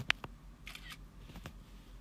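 A few sharp clicks: two close together right at the start and one about a second and a half in, with a brief soft rustle between them.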